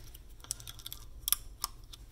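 A clear plastic Invisalign aligner tray pressed onto the teeth by hand, snapping into place with three small clicks.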